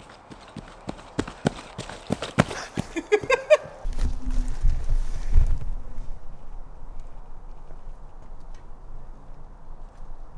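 Running footsteps on a dirt forest trail, coming closer and growing louder and quicker over about three seconds. A short vocal sound follows, then a low rumble and a steady faint outdoor background.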